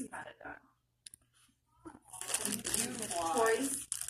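Fabric rustling and crinkling close to the microphone, starting about two seconds in, with a person's voice over it.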